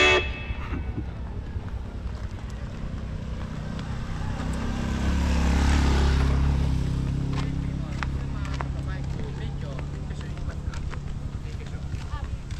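A motorcycle engine growing louder as it approaches and passes, loudest about halfway through, then fading away, with faint voices in the background.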